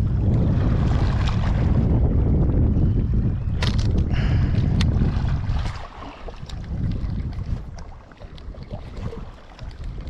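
Wind buffeting the microphone, a heavy low rumble that drops away about six seconds in, leaving quieter wind and handling noise. A few sharp clicks and knocks sound around four to five seconds in.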